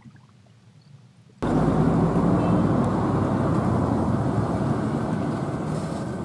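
Road traffic noise dominated by a heavy diesel truck running along the road, a steady rumble that starts suddenly about a second and a half in and eases slightly toward the end.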